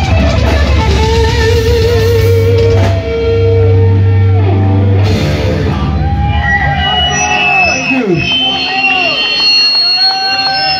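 Live heavy metal band, with distorted electric guitar, bass and drums, playing a heavy sustained passage that ends about five seconds in. After it comes high ringing guitar feedback and people whooping.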